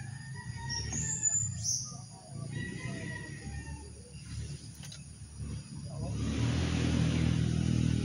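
A motor vehicle engine running, with a low pitched hum that grows louder over the last two seconds as it draws nearer. Birds chirp a few times in the first half.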